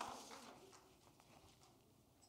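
Near silence: room tone, with a few faint taps of footsteps walking away that die out in the first second.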